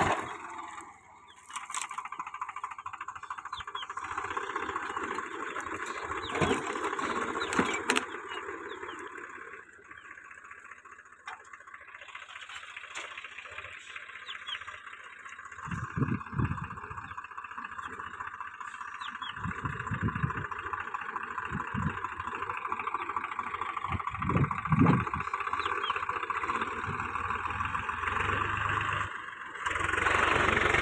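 Swaraj 744 tractor's three-cylinder diesel engine running under load as it pulls a mounted reversible plough through dry soil, heard at some distance and varying in loudness. Several short low buffets, like wind on the microphone, come in the second half.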